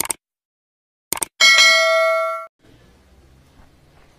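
Sound effect of a subscribe animation: a mouse click, two more quick clicks about a second in, then a bright notification-bell chime that rings for about a second and cuts off sharply.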